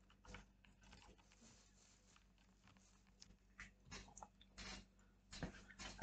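Near silence: room tone with faint scattered clicks and rustles, a few slightly louder in the second half.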